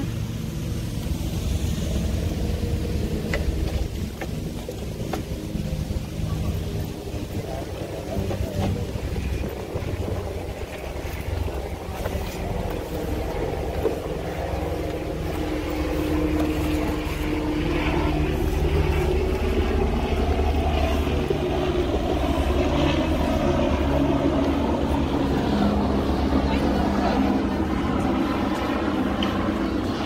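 A steady low rumble throughout, with faint voices of people nearby that grow more prominent about halfway through.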